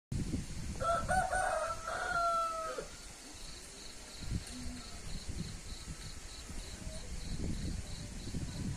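A rooster crowing once, one long call of about two seconds that ends in a falling note.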